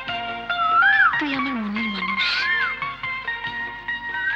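Film background score: sustained chords under a melody of short pitch glides that swoop up and fall away, repeating every second or so, with a lower sliding phrase in the middle.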